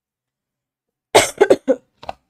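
A woman coughing, a quick run of three or four coughs starting about a second in, loud and close.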